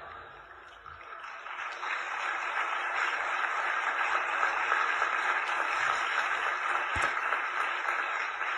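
Audience applauding, swelling about a second in and then holding steady.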